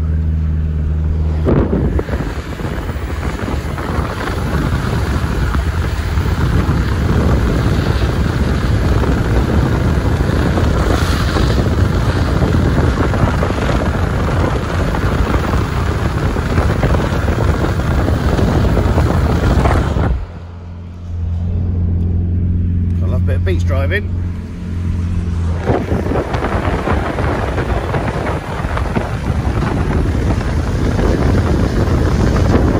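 Wind rushing over the microphone of a camera held out of a moving car on a beach, over the car's engine running; briefly about two-thirds of the way through the wind noise drops away and the steady low engine hum is heard on its own.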